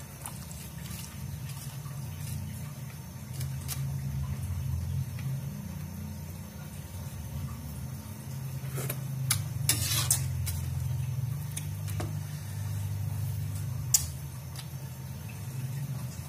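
Shrimp and onion stir-fry cooking in its thin sauce in a wok on the stove: a steady low rumble, with a few scrapes and taps of the metal spatula against the wok, the loudest about nine to ten seconds in.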